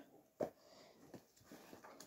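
Near silence in a small room, broken by one short, sharp click-like sound about half a second in and a few faint soft sounds later.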